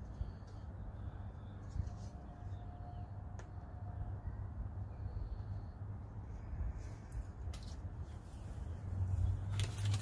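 Protective paper backing being peeled off an acrylic sheet, giving short paper rustles and crinkles, loudest just before the end, over a steady low hum.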